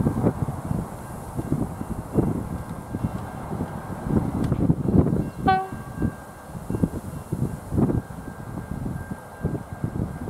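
One short, single toot of a train horn about five and a half seconds in, over a gusty low rumble that comes and goes throughout, most like wind buffeting the microphone.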